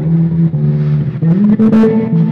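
Electric bass guitar played with the fingers: held low notes, then a slide up to a higher note about halfway through, with a sharp click near the end.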